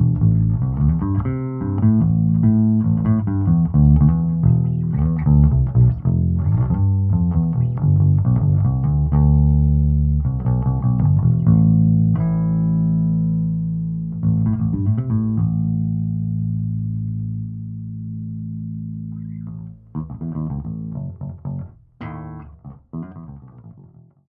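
Electric bass played through a Jaden JD 100B combo bass amp with its boost switched on: a busy run of quick plucked notes, then from about ten seconds in long held low notes that ring and slowly fade. A few more short notes come near the end before the sound dies away.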